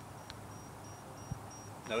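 Quiet background with a faint, high-pitched insect chirping in short, evenly spaced pulses. A man's voice starts just at the end.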